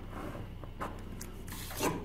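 A ballpoint pen stroking along a plastic ruler on paper, a faint scratching, then a louder scrape near the end as the ruler slides off the sheet.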